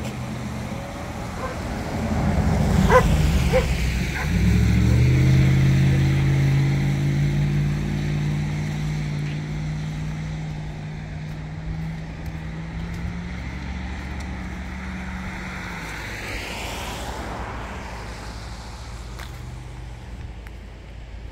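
A car going by: a steady engine hum comes up about four seconds in, holds for several seconds, then fades away.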